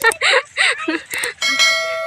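Short bursts of laughter, then about one and a half seconds in a bell-like chime sound effect for a subscribe-button animation starts suddenly and rings on, fading slowly.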